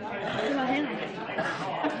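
Several people talking over one another: indistinct chatter of a group, with no single voice clear.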